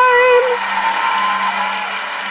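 A singer's held note with vibrato ends about half a second in, leaving a hissy wash of noise over a soft sustained low tone from the accompaniment.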